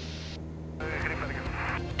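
Light aircraft's piston engine droning steadily in cruise, heard in the cockpit through the headset intercom. Faint, muffled voices come in under it from about a second in.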